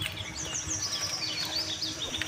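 A small bird singing nearby: a quick run of high, repeated descending chirps.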